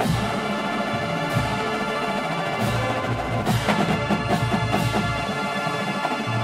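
Marching band playing a loud, sustained chord that enters at the start, over drums and bass drum, with a steady drum beat setting in about halfway through.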